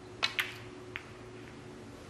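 A snooker shot: the cue tip strikes the cue ball, then a sharp click follows a split second later as the cue ball hits a red. A fainter ball click comes about half a second after that.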